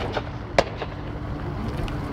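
Footsteps crunching on gravel: a sharp step at the start and another a little over half a second in, over a steady outdoor background with a faint low hum.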